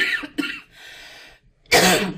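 A person coughing: a sharp cough at the start and a louder one near the end, with a short breathy sound between them.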